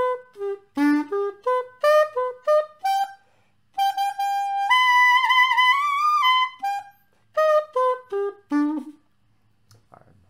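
Xaphoon, a single-reed pocket sax, playing the notes of a G major arpeggio, G, B and D, as short separate notes up and down its range. Midway a long held note steps up a third and then bends upward in pitch. More short notes follow, and the playing stops about a second before the end.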